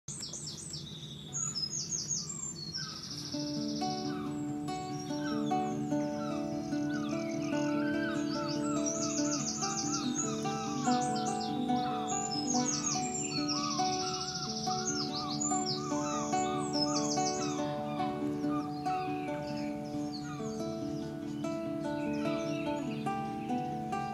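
Acoustic guitar playing a slow instrumental intro that begins about three seconds in, with birds singing throughout, including fast repeated trills.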